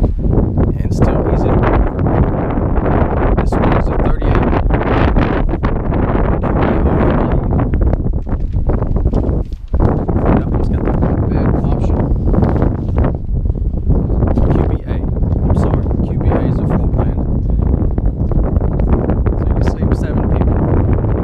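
Wind buffeting the camera microphone: a loud, steady low rumble broken by irregular gusts, with a short dip about halfway through.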